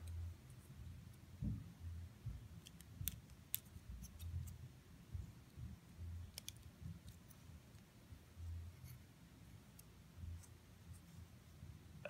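Faint handling sounds of a small carbon-fibre RC model-car chassis being turned and pressed in the hands: a few light clicks and soft low bumps.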